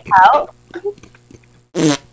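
Short wordless vocal sounds: a brief vocalization falling in pitch near the start, then a sharp, breathy burst from the mouth near the end.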